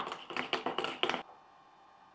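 Spoon beating eggs in a stainless steel bowl: a quick run of about seven or eight metallic clinks against the bowl's side, stopping a little past a second in.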